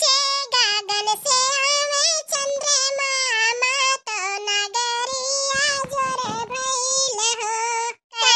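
A high-pitched, sped-up sounding cartoon voice singing a song in phrases, without clear accompaniment.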